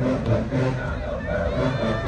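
Outdoor crowd of spectators talking and calling out over one another, over a steady low rumble.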